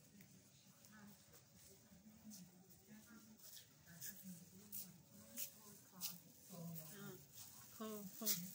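Faint voices of people talking, growing louder near the end, with a few soft footsteps on stone paving.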